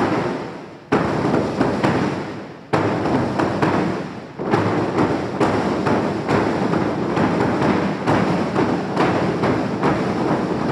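An ensemble of Mashan huigu drums, large wooden barrel drums with mountain-buffalo-hide heads, struck with sticks, loud and ringing in the room. A few single heavy beats with long decays open, then from about four and a half seconds in the drummers play a fast, steady roll of strokes.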